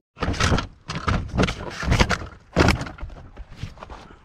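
A run of hard knocks and thuds on a wrecked car's body, about five blows close together, then lighter knocking.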